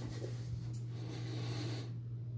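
Scratching, rustling handling noise as the handheld device and camera are moved, over a steady low electrical hum. The rustle, with a thin high whine in it, cuts off suddenly near the end.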